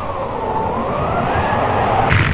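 Whistling wind sound effect: one whistling tone that dips and then rises, over a rushing hiss.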